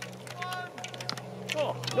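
A line of English longbows being loosed in quick succession: an irregular scatter of sharp string snaps and clicks as many archers shoot at once.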